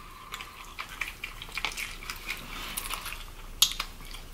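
Close-miked eating sounds: fried chicken and fries being chewed, with many small, quiet clicks and crackles and one sharper click about three and a half seconds in.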